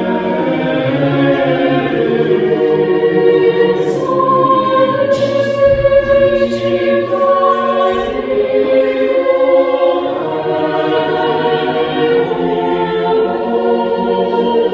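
Mixed choir of women's and men's voices singing a cappella in a church, holding long sustained chords that move slowly from one to the next. A few crisp 's' consonants cut through near the middle.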